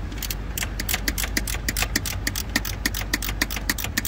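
Ratchet wrench clicking rapidly, about seven or eight clicks a second, as a bolt is worked loose, with a steady low hum underneath.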